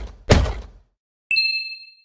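Sound effects for an animated logo: a hard thump as the last letter lands, then about a second later a bright, bell-like ding that rings briefly and fades.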